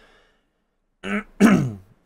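A man clearing his throat about a second in: a short breathy rasp, then a louder voiced clear that falls in pitch.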